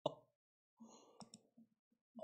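Two faint, sharp computer mouse clicks a little over a second in, over near silence.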